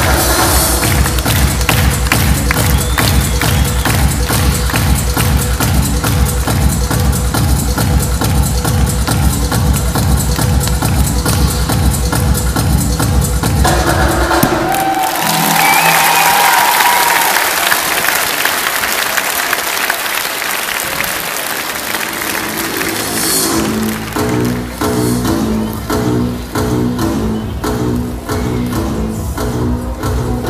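Electronic dance music with a fast, heavy beat plays and stops about halfway through, giving way to audience applause; new music starts near the end.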